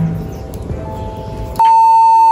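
Soft background music, then about a second and a half in a sudden loud, steady beep starts: the single high tone of a TV test-card "please stand by" signal, cut off abruptly just under a second later.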